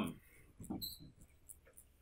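Quiet classroom room tone with a few faint, short sounds scattered through it.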